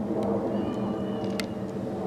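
Steady low motor hum holding several tones, with a few faint clicks and a brief thin high tone near the middle.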